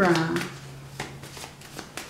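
A deck of oracle cards being shuffled by hand, heard as a few short, sharp clicks of the cards. It follows the end of a spoken word.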